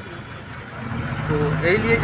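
A motor engine running with a steady low hum, which comes in about a second in, with a voice over it near the end.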